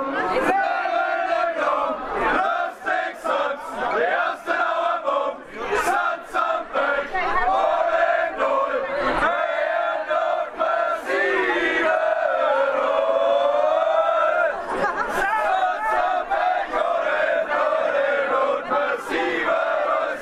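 A crowd of many voices singing and shouting together, with one long held note in the middle, and scattered sharp knocks or clinks through it.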